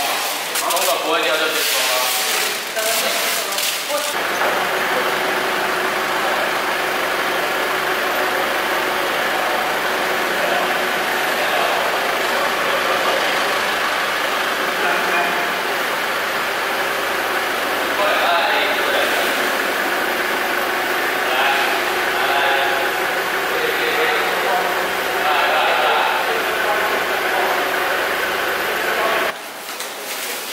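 Forklift engine running steadily, with people talking over it. The engine sound starts suddenly about four seconds in, after a few seconds of talk, and cuts off abruptly shortly before the end.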